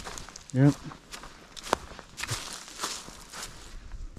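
A hiker's footsteps on dry leaf litter along a forest trail, about two steps a second.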